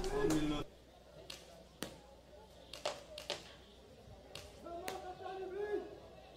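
Scattered paintball marker shots during a match: about six sharp single pops, spaced irregularly over several seconds.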